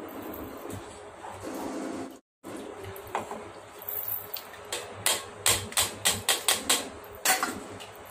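Kitchen utensils knocking against a plastic sieve and bowl while green pani puri water is strained: a quick run of about ten sharp taps, some four a second, starting about five seconds in.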